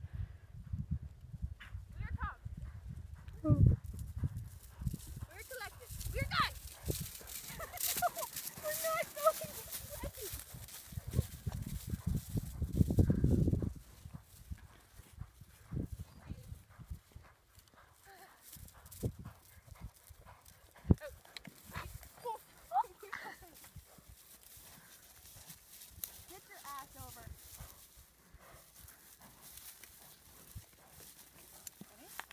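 Horse hoofbeats on a harvested stubble field. A low rumble runs through the first half and cuts off about fourteen seconds in.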